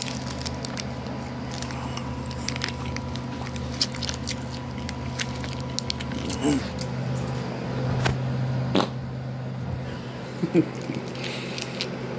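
A person chewing a bite of mozzarella string cheese close to the microphone: soft, wet mouth clicks and smacks scattered throughout, with two brief hummed vocal sounds about six and ten seconds in. A steady low hum runs underneath.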